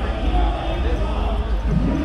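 Busy street ambience: people talking nearby over a steady low rumble.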